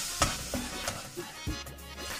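Ginger-garlic paste sizzling in melted butter in a metal pan over a low flame, stirred with a spatula that scrapes across the pan a few times. Background music plays along.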